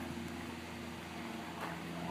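A faint, steady low hum over a soft background hiss.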